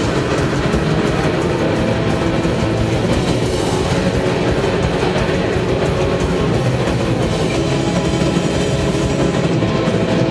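Live black-doom metal band playing loud: a dense, unbroken wall of distorted electric guitars over a drum kit.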